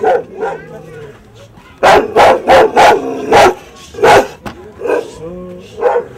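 A dog barking, a quick run of about six loud barks between about two and four seconds in, with fainter voices behind.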